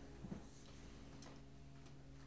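Near silence: room tone with a faint, steady electrical hum and two faint clicks about a quarter of a second in.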